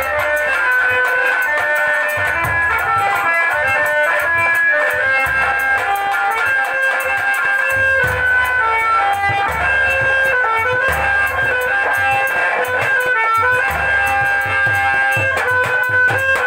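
Instrumental dance music from a live stage band: a bright, stepping melody line over hand-drum beats.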